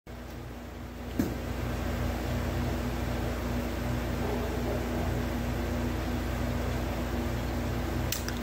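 Steady electrical hum, a low even drone that steps up in level with a click about a second in and then holds steady.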